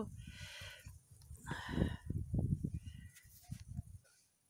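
Strong wind buffeting the microphone in irregular gusts, a deep rumbling that swells and drops. Two brief higher-pitched sounds cut through it, one just after the start and one around a second and a half in.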